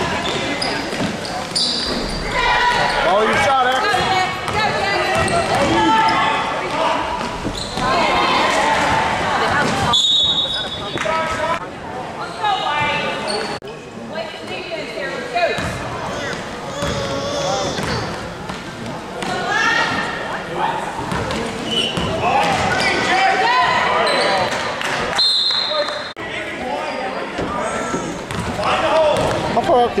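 A basketball being dribbled and bounced on a gym floor during play, a run of short thuds, under a steady background of spectators' voices.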